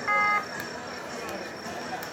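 A short electronic beep: one steady buzzer-like tone lasting about a third of a second just after the start, followed by a low background hubbub.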